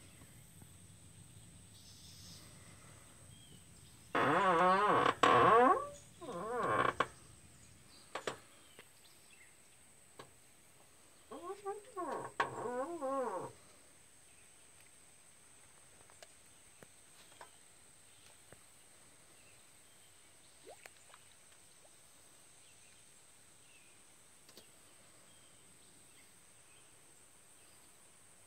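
Low animal calls in two bouts: a long call and a shorter one about four seconds in, then a quick run of three or four short notes that rise and fall in pitch about twelve seconds in.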